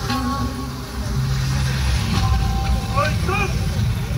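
Yosakoi dance music over outdoor loudspeakers. Its melody fades within the first half second, leaving a heavy low rumble, and a voice shouts a call about three seconds in.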